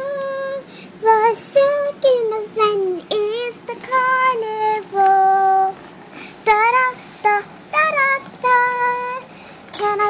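A child's high voice singing a tune without clear words, in short notes with gaps between them, some held level and some sliding up or down in pitch.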